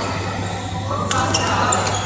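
Indoor badminton hall ambience: indistinct voices and a steady low hum, with a few sharp clicks and a brief high squeak in the second second, from play and shoes on the court floor.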